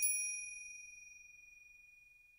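A bell-like chime sound effect struck once, ringing with a clear high tone and fading away over about a second and a half, marking the break between one story and the next.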